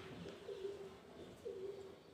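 A dove cooing: a low, faint note repeated about once a second, each held about half a second.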